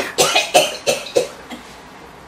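An elderly woman coughing a quick fit of about six short coughs into her fist. The coughs die away after about a second and a half.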